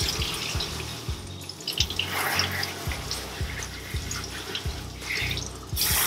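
Water spraying from a hose nozzle onto a wet cat's coat and splashing onto the mat and stainless steel tub of a grooming bath. Background music with a steady low beat, about two beats a second, runs underneath.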